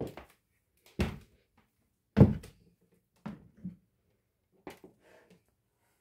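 A room door being opened and passed through: a series of short knocks and thumps, the loudest about two seconds in, with quieter ones spaced about a second apart.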